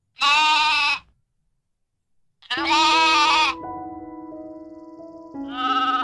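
Three sheep bleats with a wavering pitch, each under a second: the first two alone, the third over soft music of long held notes that comes in just after the second bleat.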